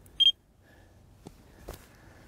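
Carp-fishing bite alarm giving one short, high beep as the line moves over it while the line tension is being set, followed by a couple of faint clicks.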